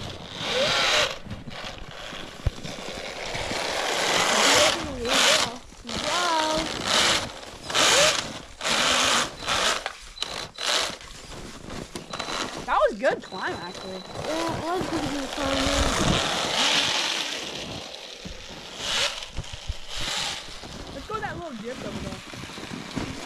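Electric RC snowmobile's brushless motor whining as it is driven, revving up and down in short spurts again and again.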